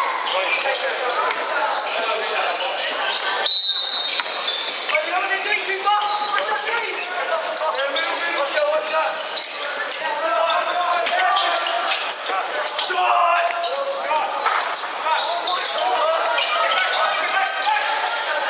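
Basketball bouncing on a wooden court in a large indoor hall, with players and spectators calling out and talking throughout.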